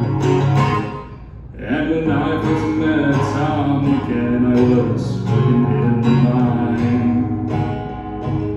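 Acoustic guitar strummed in the instrumental break between sung verses of a folk ballad; the strumming drops away briefly about a second in, then picks back up.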